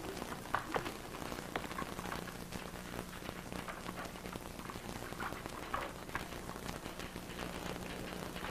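Faint office background: an even hiss with scattered light clicks and taps over a steady low hum.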